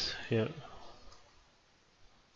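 Soft computer mouse clicks over quiet room tone, after one short spoken word.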